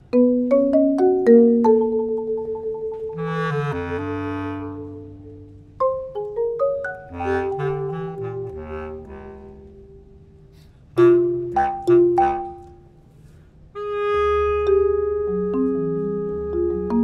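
Bass clarinet and marimba duo playing contemporary classical music. Quick rising runs of marimba notes and a few loud struck notes sound over held bass clarinet tones, with the sound twice dying away before the next phrase.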